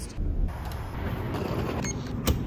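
Steady low rumble of traffic, swelling briefly about a quarter second in.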